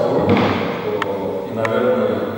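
A man speaking, with two short sharp knocks, about a second in and about a second and a half in.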